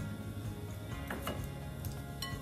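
Quiet background music with steady low sustained tones.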